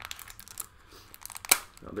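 A small candy package being handled and opened by hand: faint crinkling and rustling of the packaging, with one sharp click about one and a half seconds in.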